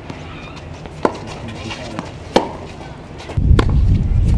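Tennis ball impacts on a hard court: two sharp pops about a second and a half apart, with a fainter knock between them. Near the end a louder low rumble sets in.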